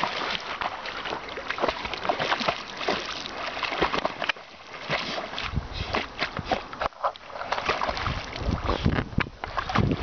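Water splashing and sloshing in irregular bursts as a swimmer churns through the water. Wind rumbles on the microphone from about five and a half seconds in.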